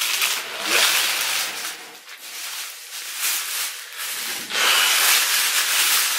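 Crinkling and rustling of something being handled close to the microphone, coming and going in waves and loudest in the last second and a half.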